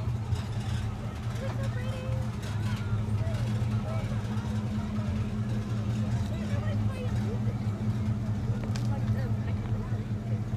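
Steady low hum of parade vehicles' engines as they roll slowly past, with people talking in the background.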